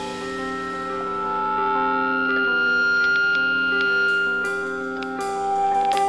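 Quiet instrumental passage of an emo rock song: several sustained, ringing notes held under one long high tone. A few softer picked notes come in near the end.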